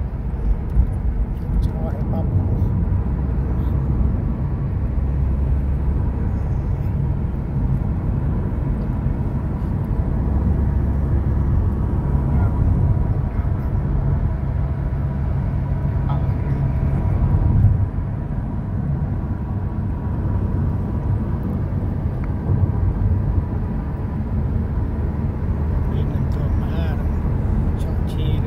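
Road and engine noise heard inside the cabin of a moving Honda Civic: a steady low rumble from driving on a highway.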